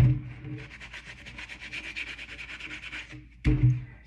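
A sponge scrubbed rapidly back and forth over the felted wool upper of a sneaker, an even run of fast rubbing strokes lasting about three seconds that begins with a bump and stops a little before the end, where a short low voice sound follows.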